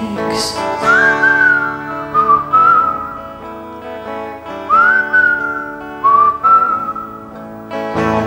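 Instrumental break of a country ballad: a whistled melody in two phrases, each sliding down from its first high note, over acoustic guitar chords.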